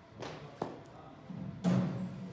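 Knocks and thuds of a cricket ball in an indoor batting net: a sharp knock about half a second in and a louder thud near the end.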